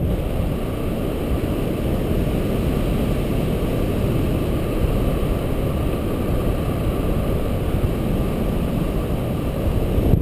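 Steady wind rush and buffeting on the camera's microphone from the airflow of a paraglider in flight.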